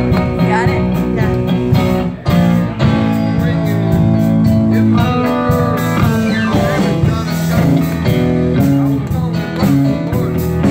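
Live band playing a swinging blues-style number: electric guitar over a steady drum beat, with some notes sliding in pitch.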